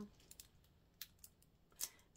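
Near silence: quiet room tone with a few faint short clicks.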